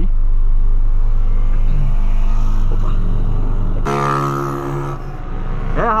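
Four-cylinder engine of a 2008 VW Polo 1.6 heard from inside the cabin, idling with a steady low hum. About four seconds in, the sound changes abruptly to the engine running while the car is under way, a steady droning tone.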